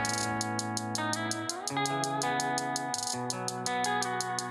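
Electric guitar being recorded into a loop, holding sustained notes whose low note changes about every second and a half. A fast, even high ticking runs underneath.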